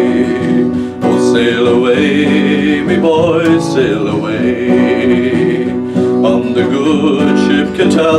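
A man singing a folk ballad chorus in long held, wavering notes over a strummed acoustic guitar.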